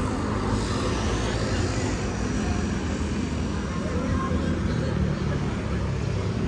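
Steady low rumble of outdoor city street noise with faint voices in it.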